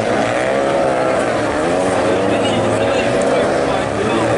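Several Renault Clio rallycross cars racing in a pack, their engines revving, with the notes rising and falling in pitch as the cars accelerate and shift.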